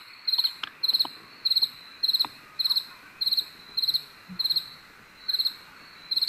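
Cricket chirping steadily, about two chirps a second, each chirp a quick trill of several pulses.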